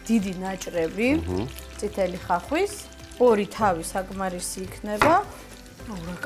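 A person talking, with frying oil sizzling in the background as meat fries in a pot.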